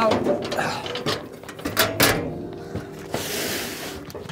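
Stainless-steel side table of a kettle grill cart being pulled out and set in place: a few sharp metal knocks and clicks, then a short sliding rasp about three seconds in.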